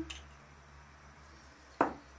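A metal spoon tapped once against a dish near the end, a sharp single knock as grated garlic is shaken off it; otherwise quiet with a faint low hum.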